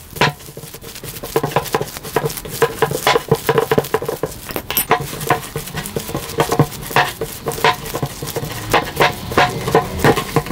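Hands squishing and kneading an oily, gluten-free sesame-flour dough in a glass bowl: a quick, irregular run of soft squelches and light taps, several a second.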